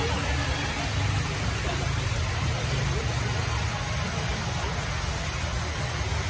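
Steady outdoor din: a low rumble, like nearby traffic or engines, under indistinct background voices.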